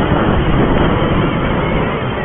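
Wind rushing over a chest-mounted camera's microphone while a BMX bike is ridden at racing speed, a loud, steady roar with rolling rumble underneath.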